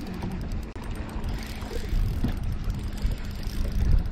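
Low wind rumble on the microphone and water noise on an open boat, with a faint steady hum underneath.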